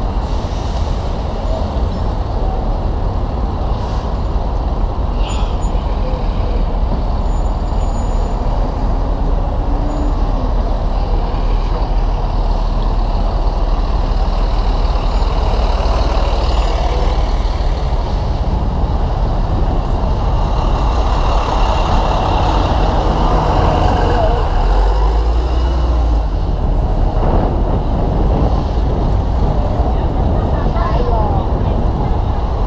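Dense city street traffic heard from among the vehicles: trucks, vans and taxis running close by, a steady loud din with no single sound standing out.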